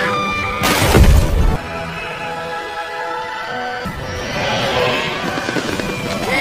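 Film score music with sustained tones, cut through about a second in by a loud crash.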